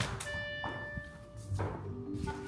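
A large soft foam die landing with a dull thunk and tumbling on a wooden floor, with a couple of fainter knocks after, over background music with a brief ringing tone.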